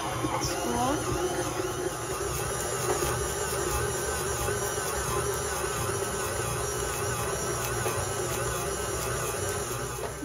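Electric stand mixer running steadily on speed 2, its dough hook kneading stiff pretzel dough around a stainless steel bowl.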